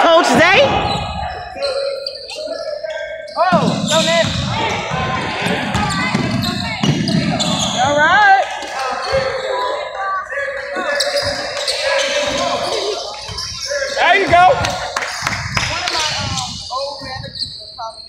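Basketball bouncing on a hardwood gym floor during play, with voices from players and onlookers echoing in a large gym.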